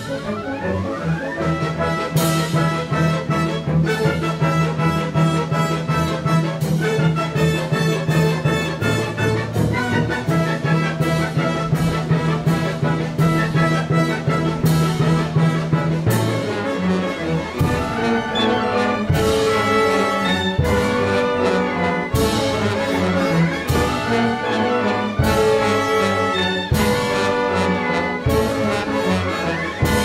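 Symphony orchestra playing live, with brass prominent over the strings. For the first half a low note is held under moving chords; about halfway through the music changes to a run of strongly accented full chords.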